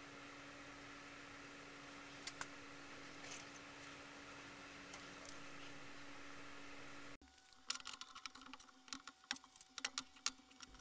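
Quiet steady hum with a few faint ticks. About seven seconds in, a run of sharp, light clicks and clacks follows as the 3D printer's black metal frame parts are handled and fitted together.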